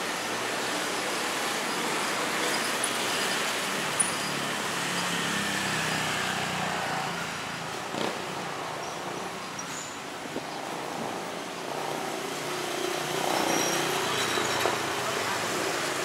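Town street traffic: cars and motorbikes passing in a steady hum, with a couple of brief sharp knocks, the loudest about four seconds in.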